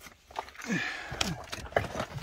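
A person crawling over cave rock: scuffing and scraping of body and clothing on stone, with a few sharp knocks.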